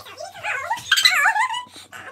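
High-pitched, wavering vocal sounds in two stretches, the louder one about a second in, rising and falling in pitch.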